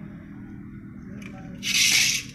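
A metal clutch pressure plate scraping briefly across a concrete floor, one harsh scrape near the end, over a steady low hum.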